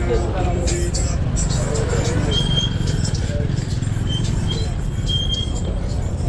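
Outdoor street ambience: a steady low rumble with faint distant voices and a few short, high chirps.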